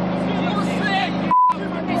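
Tank engine running with a steady low hum, still not shut off despite shouts to kill it. About 1.3 s in there is a short single-pitch beep, and all other sound drops out while it plays.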